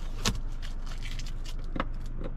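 A few sharp clicks and taps inside a car over a steady low hum. The loudest click comes about a quarter second in and another near the end.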